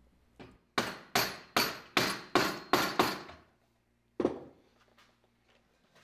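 A hand hammer striking a wooden wagon axle piece held in a bench vise, about seven sharp blows at roughly two and a half a second, each ringing briefly. About a second later comes one heavier, duller knock, then a few faint taps.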